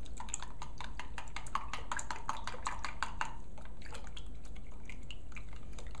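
A plastic measuring spoon stirs yeast into warm water in a glass measuring cup, dissolving it. Each stroke makes a quick, irregular click against the glass. The clicks are rapid at first and thin out after about three seconds.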